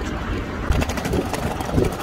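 Outdoor street noise: a low rumble of traffic and wind on the microphone, with a run of light clicks and rattles in the second half.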